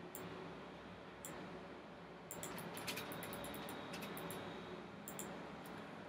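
Computer mouse clicking: a few single clicks, with a quick run of clicks about two to three and a half seconds in, over a faint steady hiss.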